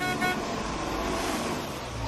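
A car sound effect on an animated film's soundtrack: the steady low rumble and running noise of an old motor car, as the last notes of piano music die away at the start.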